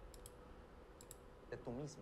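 Faint computer clicks in two short groups about a second apart, then a man's voice begins speaking near the end.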